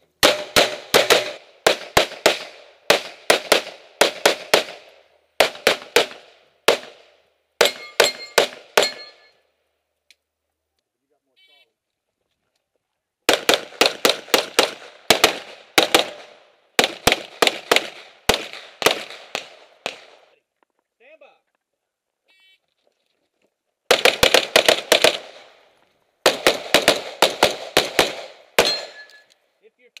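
Custom USPSA Open-division race pistol firing rapid strings of shots, several fast shots per string, with breaks of a few seconds twice in the middle.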